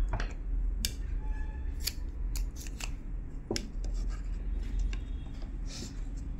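A steel blade snipping and scraping at sewing thread tangled round the shaft of a Usha Power sewing-machine motor: a dozen or so sharp, irregular clicks, over a steady low hum.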